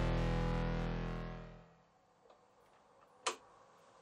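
Layered ambient electric-guitar drone, looped and processed through effects, fading out over about a second and a half as the improvised piece ends. Then quiet, broken by one sharp click about three seconds in.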